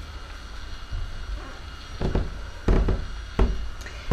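Footsteps climbing carpeted stairs: about five dull thumps, one step every two-thirds of a second or so, starting about a second in.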